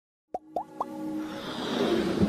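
Animated logo intro sound effects: three quick rising blips about a quarter second apart, starting a third of a second in, then a swelling whoosh that builds toward the end.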